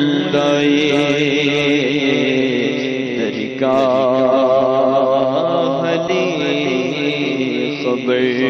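A man's voice sings a naat without words of speech, holding long wavering notes over a low steady drone. A new, higher phrase starts about three and a half seconds in.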